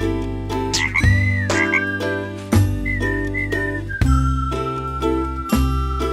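Playful cartoon background music with a high melody line held on long notes, over which a cartoon frog croaks.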